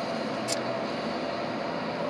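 Steady road and engine noise inside a moving car's cabin, with a faint steady hum running under it.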